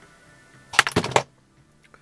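A quick run of five or six sharp clicks, close together, lasting about half a second a little under a second in.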